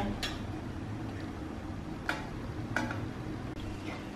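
A metal ladle clicking lightly against a stainless steel pot three times as the syrup is stirred, over a steady low background rush.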